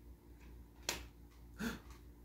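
Near silence in a small room, broken by one sharp click about a second in. A brief soft sound follows near the end.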